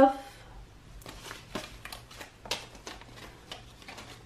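Paper dollar bills handled and counted by hand: a run of short, crisp rustles and flicks, with a couple of louder snaps about one and a half and two and a half seconds in.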